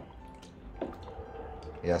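Quiet wet squelching and dripping of crushed grape must stirred with a plastic spoon, as sugar is mixed in to help fermentation.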